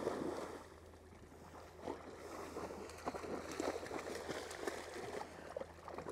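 Retriever dogs wading and swimming through shallow floodwater: a splash that fades in the first half second, then irregular small splashes and sloshing.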